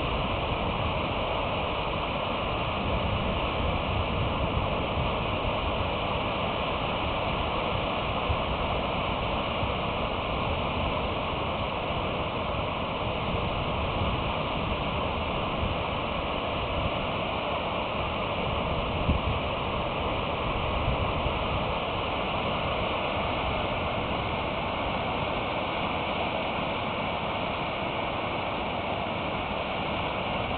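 Steady, even rush of water from a dam's outflow cascading down a rock face.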